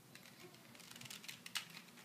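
Plastic Rubik's Cube being turned by hand: faint, irregular clicks of its layers rotating, the loudest about one and a half seconds in.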